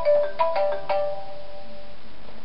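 Mobile phone ringtone: a quick melody of ringing notes that stops a little over a second in.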